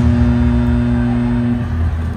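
Arena horn sounding one low, steady note that cuts off shortly before the end.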